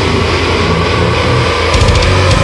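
Heavy metal: heavily distorted guitars over very fast, even bass-drum strokes. Cymbal hits come back near the end.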